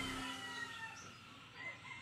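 A rooster crowing, its call falling in pitch over the first second, with a shorter call about a second and a half in.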